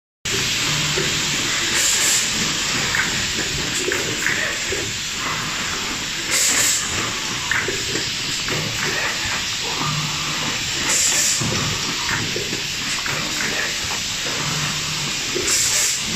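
Semi-automatic rigid box making machine with box gripper running: a steady hiss, with a brief brighter hiss about every four and a half seconds as the machine cycles.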